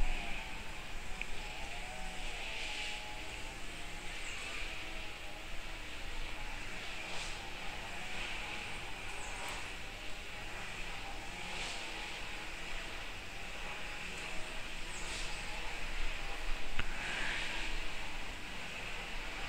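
Faint, soft scratches of a paintbrush dabbing acrylic paint onto paper every few seconds, over a faint wavering hum in the background.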